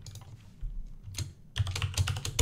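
Computer keyboard keystrokes: a few separate key clicks, the last ones quicker and louder, as ':q' is typed to quit Vim.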